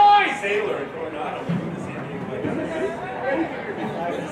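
Voices at a rugby sevens match: a loud shouted call that ends just after the start, followed by indistinct chatter and calls from several people.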